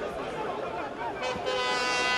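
Voices chattering in the stands, then about halfway through a long, steady horn blast starts and holds.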